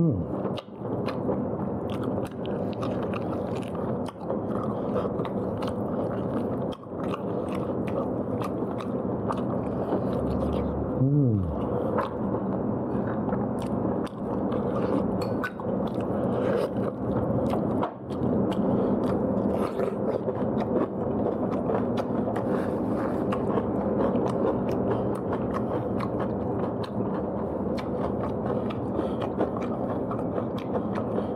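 A person chewing and biting food close to the microphone, with many small clicks of the mouth and food throughout. A short hummed vocal sound, 'mmm', rises and falls about 11 seconds in.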